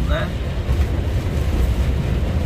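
Steady low drone of a lorry driving on a rain-soaked motorway, heard from inside the cab: engine and tyre rumble with a hiss of spray over it.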